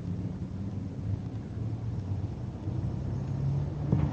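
Low, steady background rumble with a faint hum.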